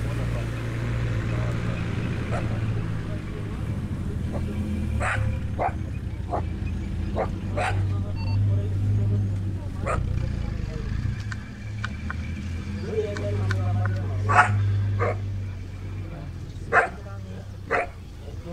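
Cheetah cubs hissing and snarling at a black-backed jackal that is trying to get at their gazelle kill: a run of short, sharp calls about five seconds in, then a few more spaced out toward the end, over a low steady rumble.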